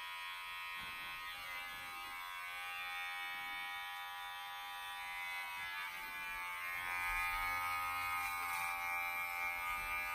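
Electric hair clippers running with a steady buzz while cutting the hair along the side of a man's head and sideburn, getting a little louder about seven seconds in.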